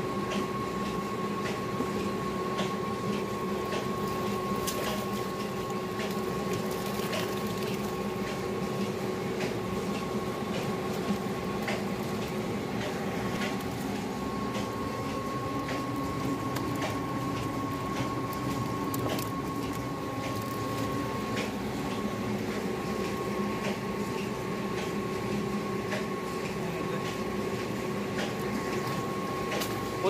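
Live fish flapping and water splashing in a canoe as cage traps are shaken out, heard as many scattered short clicks and slaps over a steady, unchanging hum.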